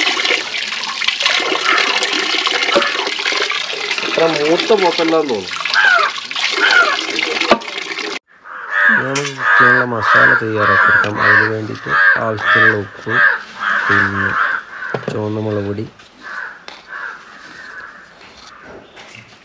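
Water pouring from a pipe and splashing into a pot as raw beef is rinsed under it. After a sudden cut about eight seconds in, a crow caws about a dozen times in a steady rhythm, roughly two caws a second.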